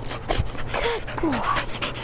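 Pit bull-type dog panting close to the microphone, with a couple of short falling whines. A low bump comes about half a second in.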